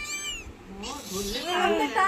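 A cat meowing, a short call at the start and more calls through the rest, with a person's voice mixed in.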